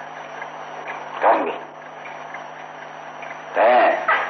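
Steady hiss and low hum of an old sermon recording during a pause in the talk. A man's voice is heard briefly about a second in and again near the end.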